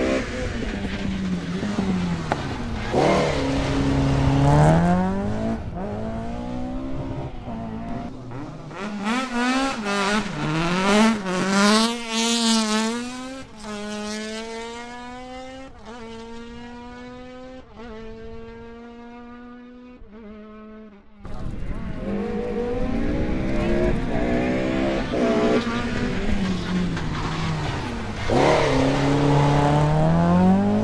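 Rally car engines revving hard through a tight chicane. One car accelerates away, its pitch climbing and dropping back with each of several upshifts as it fades. The sound changes abruptly about two-thirds in, and another car's engine grows loud as it comes into the turn near the end.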